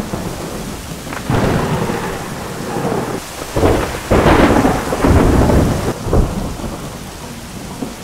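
Heavy storm rain and wind battering a moving van's windscreen, heard from inside the cab. The noise surges louder about a second in and again from about three to six seconds.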